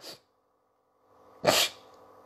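A man sneezing once: a single short burst about one and a half seconds in.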